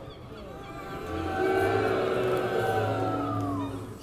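A motor vehicle passing on the street, its engine note swelling in about a second in and sliding down in pitch as it goes by near the end.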